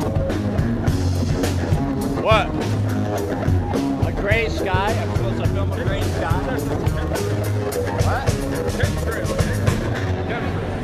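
Live band playing amplified music, with a steady bass line, electric guitar and a regular drum-kit beat, and people's voices calling out over it; the song stops near the end.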